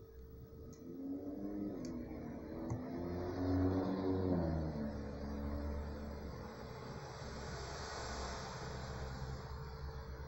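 An engine passing by, its pitch rising and then falling between about one and five seconds in, followed by a steady rushing noise that swells near the end. A faint steady hum runs underneath.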